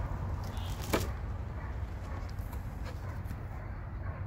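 Cardboard box and plastic and foam packing being handled as a car radio is unboxed, with a sharp click about a second in and a few lighter ticks, over a steady low rumble.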